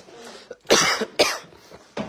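A person coughing twice in quick succession, two short harsh coughs about half a second apart.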